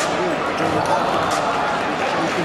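A basketball bouncing on a hardwood court during play, a few bounces heard over a steady murmur of arena crowd chatter.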